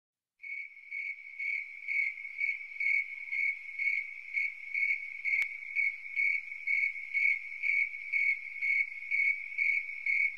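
A high, steady insect-like chirping that pulses about twice a second.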